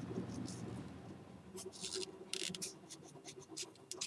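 Pencil scratching short marks onto a cardboard model-rocket body tube, a few quick faint strokes starting about a second and a half in.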